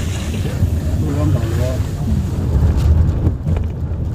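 Steady low rumble of a car driving along a road, with wind buffeting the microphone and faint voices underneath.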